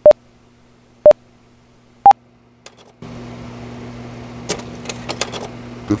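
Countdown beeps: a short electronic tone once a second, three times, the third one higher in pitch. About three seconds in, a steady low hum with hiss comes up, with a few crackles near the end.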